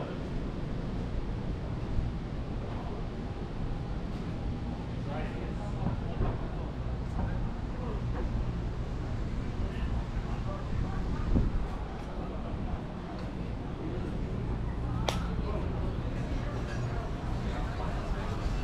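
Urban alley ambience: indistinct voices of people around, over a steady low background rumble, with one sharp click about fifteen seconds in.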